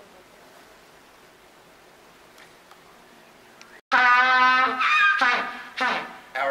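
African penguin braying in its upright, head-back, flippers-spread display: a loud, donkey-like call that starts suddenly about four seconds in, one long held bray followed by a shorter one. Before it, only quiet room tone.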